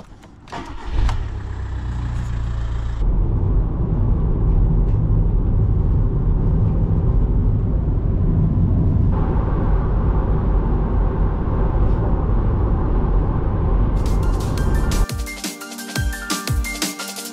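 A van's engine started with the ignition key, catching about a second in and idling briefly, followed by steady engine and road noise heard inside the cab while driving. Electronic music with a beat comes in near the end.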